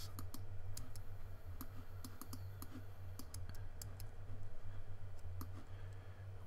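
Scattered light clicks from a computer keyboard and mouse, irregular and unevenly spaced, over a steady low hum.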